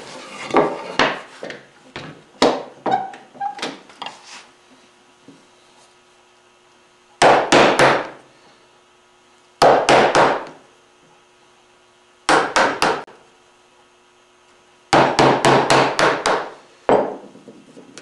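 Wooden mallet striking a bench chisel to chop the waste out between dovetail tails in a wooden board. It starts with light, rapid taps over the first few seconds, then comes in bursts of three or four quick blows a couple of seconds apart, the last burst longer.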